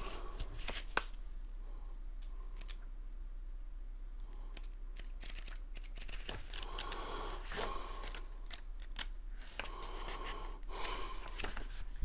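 A thin paper instruction booklet being opened and leafed through by hand: a scattered run of small paper flicks, rustles and soft swishes of turning pages.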